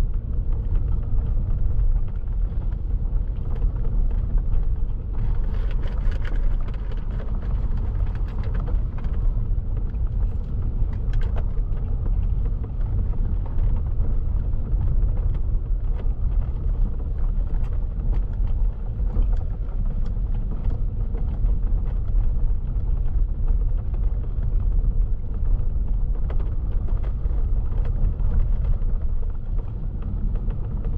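Car driving slowly, heard from inside the cabin: a steady low road rumble from the tyres and engine on a dirt-and-gravel country road, with a stretch of brighter tyre hiss about five to nine seconds in.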